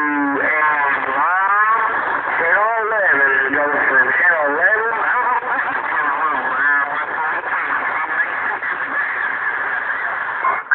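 CB radio speaker carrying a strong, distorted transmission with a warbling, voice-like sound that glides up and down in pitch, still heard as the set is switched from channel to channel: the signal of a high-powered Palomar linear amplifier bleeding over onto every channel.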